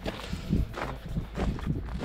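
A few footsteps on gravel.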